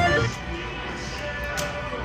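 Golden Century Dragon Link slot machine playing its electronic game sounds: a short run of chime notes as a small win registers at the start, then steady held tones while the reels spin.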